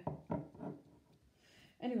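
A woman's voice speaking, with a light knock near the start as a glass jar is handled on a wooden board, then a short pause before more speech.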